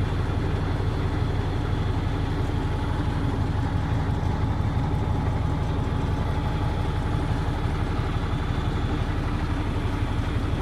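Diesel engine of a 1980 Chevy Bison tandem dump truck idling steadily, heard from inside the cab.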